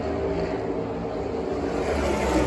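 A field of NASCAR Cup Series stock cars with pushrod V8 engines running around the oval, heard from the grandstands as a steady, blended engine drone.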